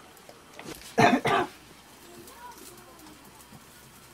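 A man's short cough, two quick bursts close together about a second in; the rest is faint room sound.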